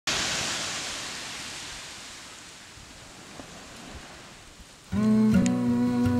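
Surf washing onto a sandy beach, a soft rushing noise that starts loud and fades away over about five seconds. Near the end, music with steady held tones comes in suddenly and is louder than the surf.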